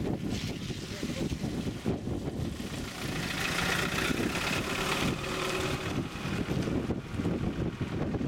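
Wind buffeting the microphone, with a Mazda 3 hatchback driving slowly past. Its tyre and engine noise swells from about three seconds in and fades after five.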